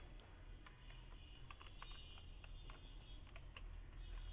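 Faint typing on a computer keyboard: a string of short, irregularly spaced keystroke clicks.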